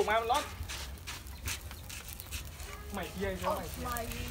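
Burning straw pile crackling with irregular sharp snaps, under voices at the start and again near the end.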